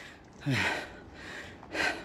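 A man breathing hard close to the microphone: a short voiced exhale falling in pitch about half a second in, then another sharp breath near the end.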